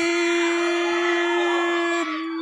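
A commentator's voice holding one long shouted vowel at a steady pitch: the drawn-out 'y…' after the count of two on a pin, kept up while the outcome of the count hangs.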